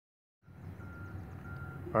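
Steady low background rumble that starts about half a second in, with two short, faint beeps of the same pitch in quick succession. A man's voice begins at the very end.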